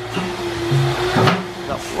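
An industrial canister wet/dry vacuum cleaner running with a steady motor hum, under background music.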